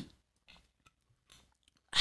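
A person's faint mouth and breath sounds with a soft click after a swig from a wine bottle, then a loud breathy exhale near the end.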